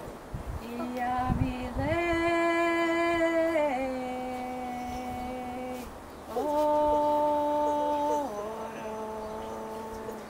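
A woman singing unaccompanied in a slow melody, holding long steady notes of a second or two each that step up and down in pitch.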